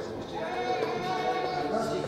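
People's voices in a room, with one drawn-out voice that wavers up and down in pitch through most of the moment.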